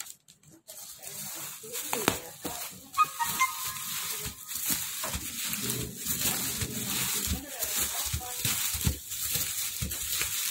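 Plastic bubble wrap handled and pulled open around an LCD panel, an uneven crinkling and rustling with many small crackles.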